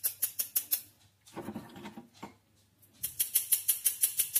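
Small hand-held metal mesh sieve tapped rapidly to sift icing sugar, giving quick even ticks of about eight a second. The ticks stop for about two seconds in the middle, then start again.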